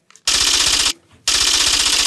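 Rapid clattering sound effect in two bursts, the first about two-thirds of a second long and the second over a second, as a caption's text comes up on screen.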